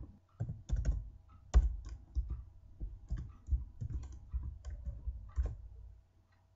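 Computer keyboard being typed on: an uneven run of quick keystrokes, one louder stroke about a second and a half in.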